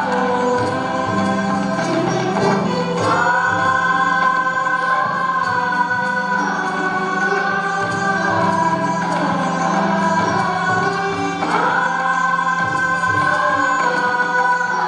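Massed voices singing long held notes in unison in an Indian classical ensemble performance, over a steady low drone. The melody glides up to a higher note about three seconds in and again near the end.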